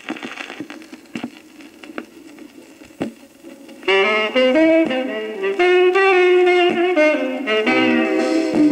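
A scratched Victor sonosheet (thin flexi-disc record) playing on a turntable. For the first four seconds the stylus gives surface crackle and sharp clicks. Then the band's instrumental intro starts loudly, a melody of held notes.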